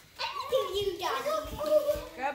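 Children's voices calling out without clear words, with high gliding pitches.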